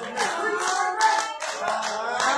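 Congregation clapping, a dense, uneven run of hand claps, with voices calling out and singing over it.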